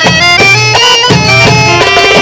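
Accordion playing a melody of held and sliding reed notes over an Egyptian percussion ensemble of darbukas and riqs beating a steady rhythm.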